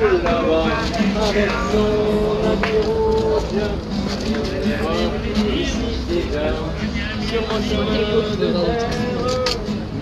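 A live song sung at an outdoor memorial concert, with held, wavering notes, over the murmur of a crowd.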